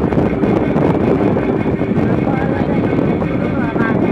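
A road vehicle in motion: steady running and road noise, with wind buffeting the microphone. Faint voices can be heard under it.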